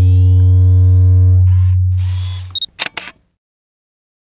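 Produced camera sound-effect sting: a deep, loud low drone with a few steady tones above it, two short noisy bursts, a brief high beep, then three quick shutter-like clicks. It cuts off to silence about three seconds in.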